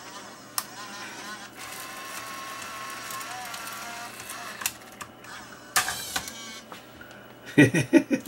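VCR tape-transport motors whirring steadily for about three seconds, with clicks from the mechanism before and after and a short whir near the end. The tape has stuck and wrapped around the head drum.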